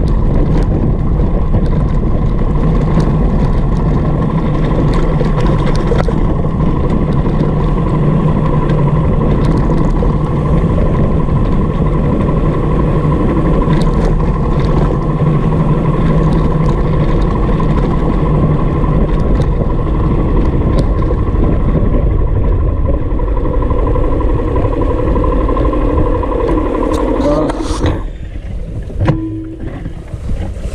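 Small motorcycle's engine running steadily while riding a rough gravel road, with road and wind noise. Near the end the sound drops away sharply as the bike comes to a stop.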